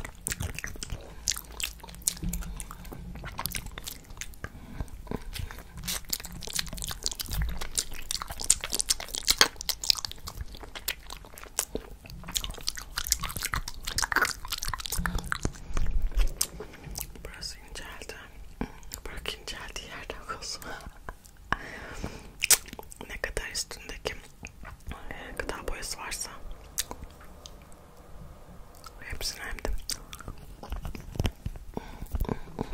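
Close-miked wet mouth sounds from licking and sucking a striped candy cane held against the lips: a dense, irregular run of sticky tongue and lip clicks and smacks.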